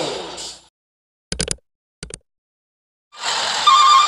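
Mostly dead silence on an edited soundtrack. Two short clicking sound-effect bursts come about a second and a half and two seconds in. Electronic music fades out at the start and comes back near the end.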